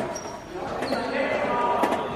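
Indoor football in a sports hall: the ball being kicked on the hard court, two sharp knocks at the start and near the end, with short shoe squeaks on the floor and players calling out, all echoing in the large hall.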